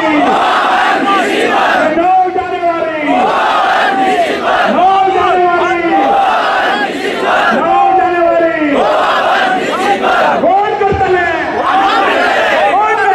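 A large crowd of protesters shouting slogans together, the same loud chant repeated about every three seconds.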